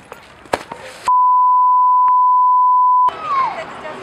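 A single steady electronic bleep lasting about two seconds, edited into the soundtrack about a second in. All other sound drops out completely beneath it, as with a censor bleep.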